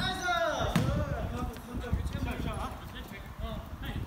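Basketball play on a wooden gym court: sneakers squeaking on the floor and the ball bouncing, with a sharp knock just under a second in.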